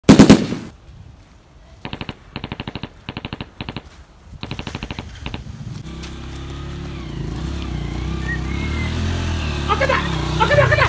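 Bursts of rapid automatic gunfire: a loud bang at the start, then about six short rattling bursts over the next few seconds. Then a low steady hum that grows louder.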